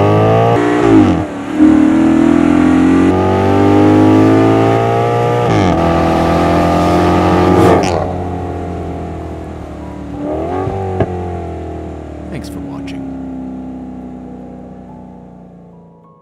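Maserati GranTurismo's Ferrari-built V8 accelerating hard, its pitch climbing through each gear and dropping sharply at the upshifts. A quick rev rise and fall comes about ten seconds in, then two sharp exhaust cracks, and the engine fades away as the car recedes.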